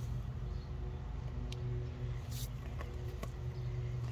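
A steady low machinery hum in the background, with a few faint soft scuffs of hands setting a dahlia tuber into loose soil.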